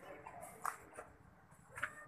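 Footsteps of someone walking on a stone path, short sharp steps about one every two-thirds of a second, one about a second in and another near the end.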